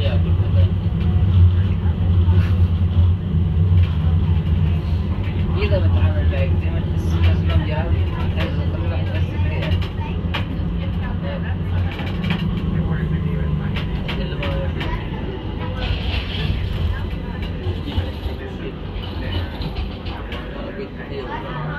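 Tram running, heard from inside the car: a steady low rumble that eases slightly in the second half, with indistinct passenger voices.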